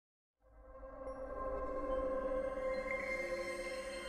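Opening theme music: a held, droning chord of several steady tones over a low rumble, fading in from silence over about a second.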